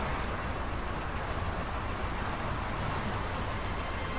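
Steady hum of distant road traffic, even throughout, with no distinct events standing out.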